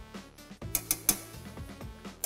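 A few light clicks of metal tongs and utensils against a plate and pan, about a second in, over quiet background music.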